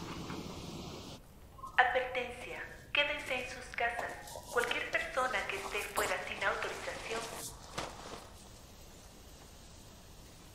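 A man's strained, wordless cries and grunts in a run of short bursts, from about two seconds in to about eight seconds in, as he grapples with someone.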